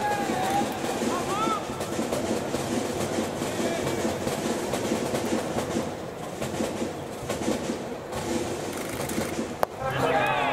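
Ballpark crowd noise from the stands, with voices and cheering running throughout. Near the end, one sharp crack of a bat hitting a pitched ball.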